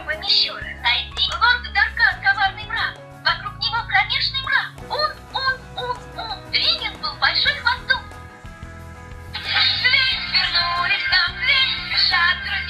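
Children's electronic Russian-alphabet learning tablet playing through its small built-in speaker: a recorded voice over a synthesized backing tune. About nine seconds in, a denser sung melody starts.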